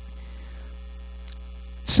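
Steady low electrical mains hum, with a man's voice coming in just at the end.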